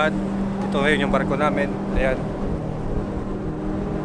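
A steady low mechanical hum with wind rumbling on the microphone, under a man's brief speech in the first half.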